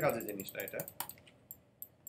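Quick run of light clicks from a computer keyboard and mouse, thinning out to a few single clicks about a second in, after a short vocal sound at the start.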